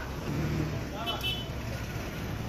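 Steady low engine rumble of vehicles or machinery, with brief snatches of voices about half a second in and again just after a second in.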